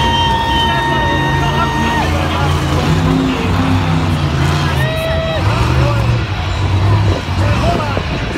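Max D monster truck's engine running and revving as the truck drives and maneuvers. A steady high tone is held over it for about two seconds at the start, with a shorter one about five seconds in.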